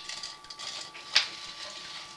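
A single sharp click a little over a second in, over a faint steady high-pitched electrical whine and low hiss.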